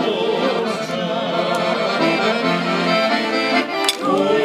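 Guerrini piano accordion playing a tune in steady held notes and chords.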